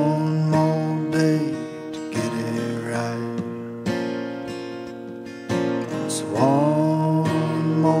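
Acoustic guitar strumming chords in an instrumental break of a folk song, with a group of notes bending up in pitch at the start and again about six and a half seconds in.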